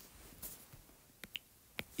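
A few faint, sharp clicks of a stylus tapping on a tablet's glass screen, about four of them, the strongest near the end.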